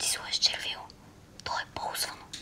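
Speech only: a girl whispering in Bulgarian, with a short pause about a second in.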